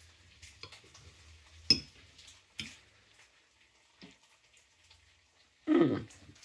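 A metal fork clinking against a ceramic dinner plate: a few sharp clicks, the loudest about two seconds in. A brief voice-like sound comes near the end.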